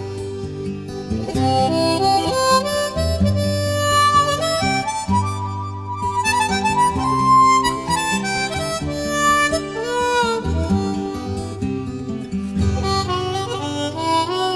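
Blues harmonica playing an instrumental solo of bent, sliding notes over guitar accompaniment.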